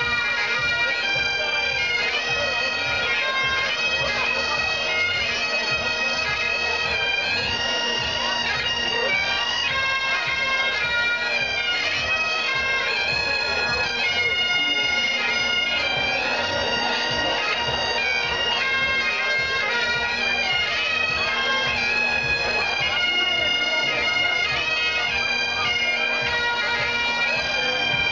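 A trio of Great Highland bagpipes playing a tune together: the chanters' melody steps up and down over the steady, unbroken hum of the drones.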